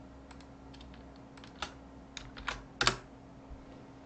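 Scattered keystrokes on a computer keyboard, about eight irregular clicks, the loudest about three seconds in, over a faint steady hum.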